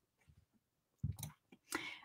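A quiet pause: about a second in, a soft mouth click, then a short breath drawn in before speaking.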